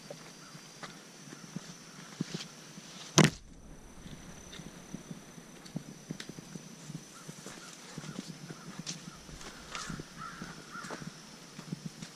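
Footsteps of hikers on a dirt trail, soft scuffs and ticks, with one loud sharp thump about three seconds in. A faint steady high tone runs underneath.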